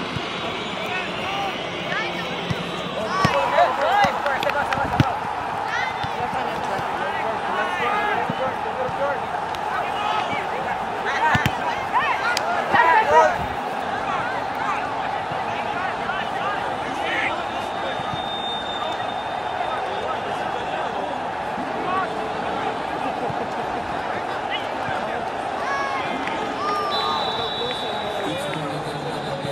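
Distant, indistinct shouting from players and sideline spectators across an outdoor soccer field, over a steady background hum of the open field. There is a single sharp thud about five seconds in and a brief high steady whistle tone near the end.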